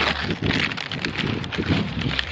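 Paper fast-food bag rustling and crinkling as hands dig into it and pull food out, with a low steady rumble underneath.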